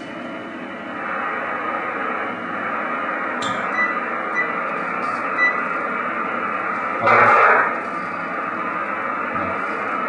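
Amateur radio receiver hiss from the transceiver's speaker while it is listening for replies, with a brief louder burst of noise about seven seconds in.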